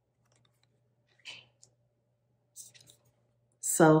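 Oracle cards being handled: a brief soft swish of a card about a second in, then a few light clicks and taps as a card is set down and another picked up, near three seconds.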